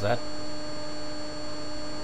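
A steady hum with a few fixed tones, one of them high-pitched, over a constant hiss. It runs unchanged under the narration, as background noise of the voice recording. A spoken word ends just at the start.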